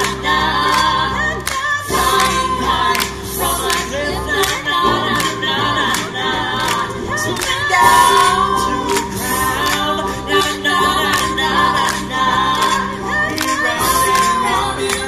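A small mixed choir singing a cappella in close harmony, upper voices moving over a steady, low sung bass line. Short sharp clicks fall regularly in time with the song.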